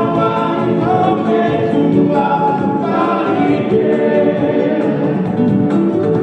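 Music with a group of voices singing in harmony, holding long notes.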